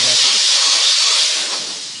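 Handheld steam-cleaner nozzle hissing as it jets steam onto a car's plastic door panel, fading away near the end.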